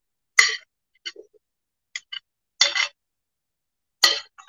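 A metal spoon scraping and clinking against a plate as chopped peppers are spooned off it: a handful of short scrapes and taps, the longest about half a second in and near three seconds in.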